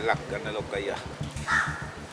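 A crow cawing twice: a harsh call at the start and another about a second and a half in.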